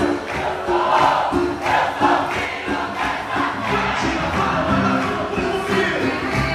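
Large crowd shouting and singing along over live boi-bumbá music with a steady drumbeat, about two beats a second.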